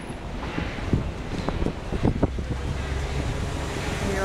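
Wind on the microphone over city street noise. Several sharp knocks come in the first half, and a steady low hum sets in a little past halfway.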